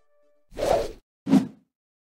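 Two short whoosh transition sound effects about half a second apart, the first starting about half a second in and the second lower in pitch.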